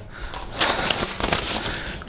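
Paper race-number bibs rustling and crinkling as they are handled, with an irregular run of small crackles.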